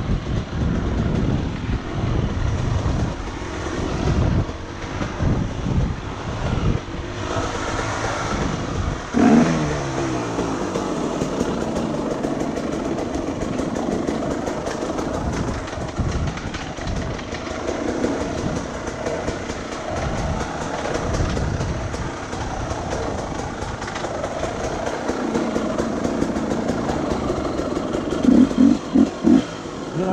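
Dirt bike engine running as it is ridden over a rough forest trail, the revs rising and falling unevenly. About nine seconds in the engine note drops sharply, and near the end come a few short, loud blips of throttle.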